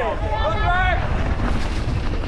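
Wind buffeting a chest-mounted camera microphone over the rumble of a mountain bike's tyres and frame on a dry dirt trail. High, shouted cheers from spectators trail off in the first second.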